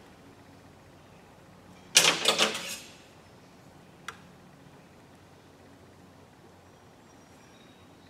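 Tool handling on MDF: a short, loud scraping clatter about two seconds in as a metal combination square is picked up, then a single sharp click about two seconds later. Quiet shop room tone otherwise.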